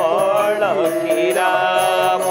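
Male voices singing a devotional chant to harmonium accompaniment, the sung line sliding down to a lower held note partway through. Light hand-drum strokes from a barrel drum keep time underneath.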